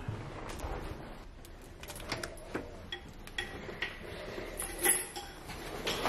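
Keys and a door latch being worked as a flat door is unlocked and opened: scattered light clicks, knocks and metallic jingles, with a louder clack about five seconds in.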